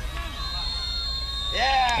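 A referee's whistle is blown in one long, steady, high blast starting about half a second in. It stops play before the snap for a delay-of-game penalty on the offense.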